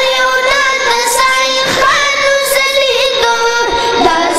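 A Pashto naat sung in a high voice, with long held notes that slide between pitches.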